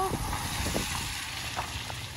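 Footsteps on wet gravel: a soft, steady hiss with a few faint crunches, over a low rumble of wind on the microphone.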